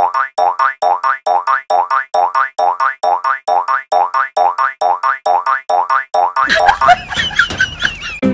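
A cartoon boing sound effect repeated in a quick, even rhythm of about four a second, each a short rising twang. Near the end it gives way to a noisier burst with high squeaky chirps.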